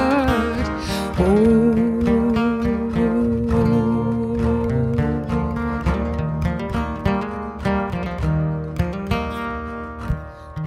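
Two acoustic guitars playing a folk song, with a singer holding one long note from about a second in until near the end.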